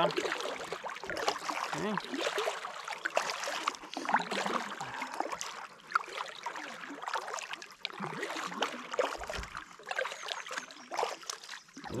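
Double-bladed kayak paddle dipping into calm river water stroke after stroke, with splashing and water trickling off the blades.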